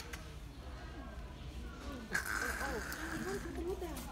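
People talking faintly in the background over a low hum, with a brief harsh, hissing sound that starts suddenly about two seconds in and lasts about a second.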